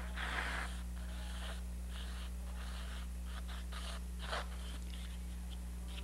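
Short, faint scratchy strokes of a sketching stick drawing lines on a stretched canvas, one after another, the clearest about four seconds in, over a steady low electrical hum.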